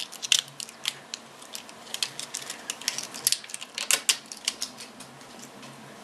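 Plastic cosmetic packaging being handled, making irregular clicks and crackles that come thick and fast, then thin out about five seconds in.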